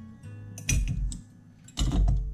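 Small repair tools being put away on a work surface: a couple of sharp clicks and knocks about a second apart, over steady background music.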